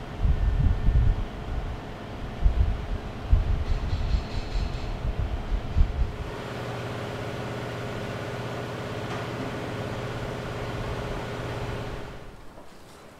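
Low, irregular rumbling for the first half, then a steady mechanical hum with a held low drone in a locomotive shed, cutting off suddenly at the end.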